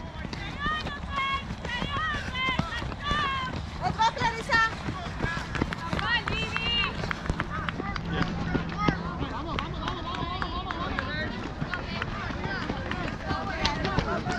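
Several spectators shouting and cheering in short, high-pitched calls, over the footfalls of runners passing on a dirt trail.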